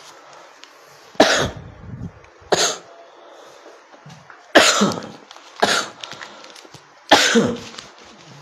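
A man coughing repeatedly: five coughs over several seconds, spaced about one to one and a half seconds apart.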